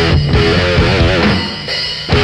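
Heavy metal song with distorted electric guitar and drum kit, and a held note wavering in pitch about a second in. The sound thins slightly near the end.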